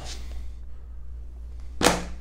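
A pause in a man's speech: a steady low hum of room tone, then a short, sharp hiss near the end, a breath taken just before he speaks again.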